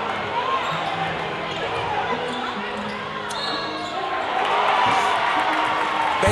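A basketball dribbled on a hardwood gym floor amid crowd chatter, with a low bass line from background music underneath.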